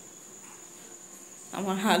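A faint, steady high-pitched tone over low background hiss. About one and a half seconds in, a woman's voice starts talking.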